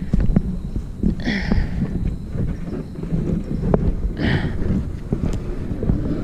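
A Pelican Argo 80 plastic kayak being hauled out of mud and up a grassy bank: the hull scraping and dragging, with irregular knocks and bumps throughout. Two short breathy bursts come about a second in and about four seconds in.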